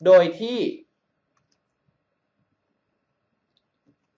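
A man's voice says a short Thai phrase, then about three seconds of near silence.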